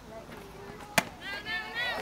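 A single sharp smack of a pitched softball at home plate about a second in, followed by a high-pitched voice calling out.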